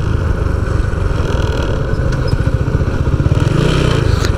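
Small motorcycle engine running while the bike slows down, heard from the rider's seat with road and wind noise.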